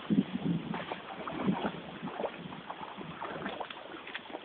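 A dog splashing and paddling through shallow stream water, with irregular splashes.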